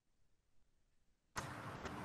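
Near silence, then about a second and a half in a faint, steady hiss of room noise from a microphone starts suddenly on the video call.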